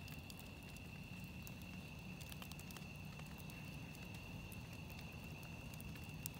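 Wood campfire burning in a metal fire ring, crackling faintly with scattered small pops. A steady high-pitched tone runs underneath.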